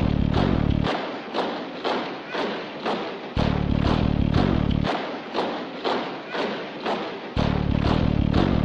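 Background music: a steady heavy beat of about two hits a second, with a deep bass note coming in about every four seconds.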